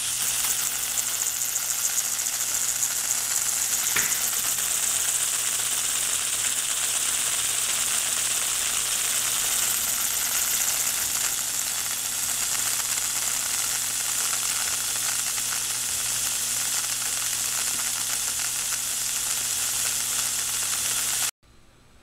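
Class E Tesla coil driving an ion motor: brush discharges stream from the tips of the spinning wire rotor with a steady sizzling hiss over a low hum. It runs without audio modulation, so no music comes through the arc. It cuts off suddenly near the end.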